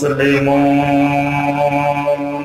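A man chanting a Quranic verse in Arabic through a microphone, holding one long, steady drawn-out note.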